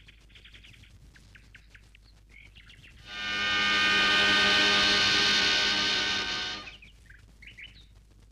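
Film soundtrack: faint bird chirps, then about three seconds in a loud sustained chord of background music swells up, holds steady for about four seconds and fades away.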